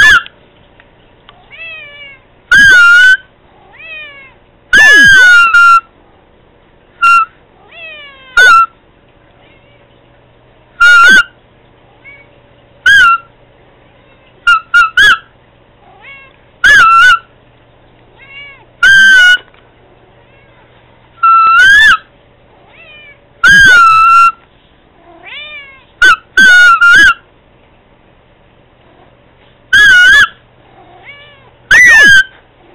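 Domestic cat meowing over and over, loud and close, one meow every second or two, with a few short meows in quick pairs or runs.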